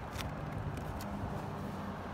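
Quiet outdoor background: a steady low drone with a light click of handled cards shortly after the start.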